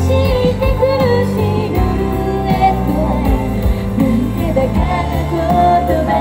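A woman singing a song live into a handheld microphone over loud instrumental accompaniment, her held notes wavering in pitch.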